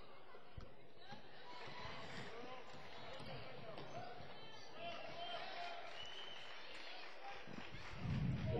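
Gym ambience during a basketball game: faint distant voices of players and spectators, with a few basketball bounces on the hardwood floor.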